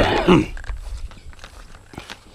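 A brief, loud call in the first half second that bends in pitch, followed by quieter footsteps on a wet, grassy trail.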